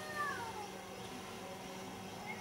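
A faint, drawn-out animal call that falls in pitch and dies away about half a second in, over a steady low hum.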